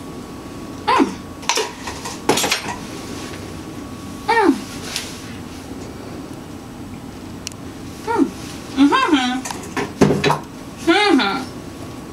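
Short wordless vocal sounds, hums and squeals that bend up and down in pitch, come about five times. Between them are light clinks and knocks of a spoon and a mug being handled, with a brief noisy burst a couple of seconds in.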